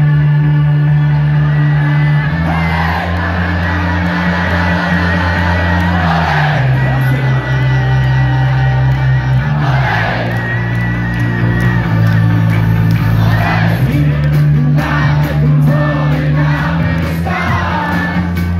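Live rock band playing loudly through a venue PA, a heavy bass line changing note every few seconds, with a crowd singing along over it.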